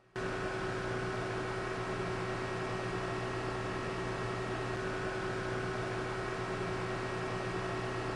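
Steady industrial machinery hum over an even hiss, cutting in abruptly at the start and holding level, with several constant tones in it.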